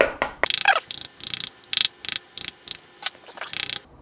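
A metal rod tapping the rind on the top of a halved pomegranate held over a glass bowl, about a dozen quick taps in a loose rhythm. Each tap knocks seeds loose into the bowl.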